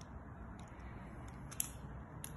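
Small screwdriver tightening the cable-grip screw of a plastic 16 amp plug: a few faint clicks and scrapes, one a little louder about one and a half seconds in.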